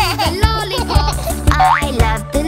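Children's song: a voice singing over a bouncy backing track with a steady beat. About one and a half seconds in, a quick rising glide sounds like a cartoon boing effect.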